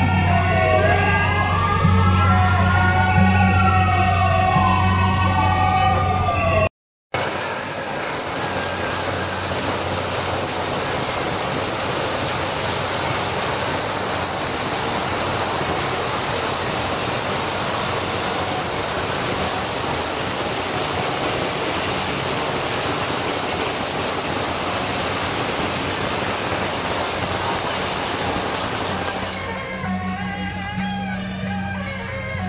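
Rising and falling siren-like tones over a steady low hum for the first several seconds. After a short break comes a long, even, dense crackle from a string of firecrackers going off continuously for over twenty seconds.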